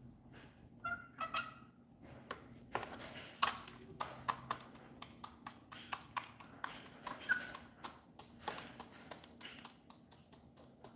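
H'mông chicken hen pecking feed from a plastic cup: an irregular run of sharp taps of beak on plastic, a few a second, with a couple of short clucks about a second in.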